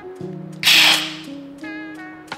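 A loud, short slurp of brewed coffee sucked from a spoon, about two-thirds of a second in, over background music.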